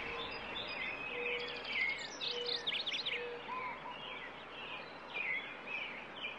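Several birds chirping and trilling over a steady hiss of forest ambience, with a short low note repeated four times in the first half.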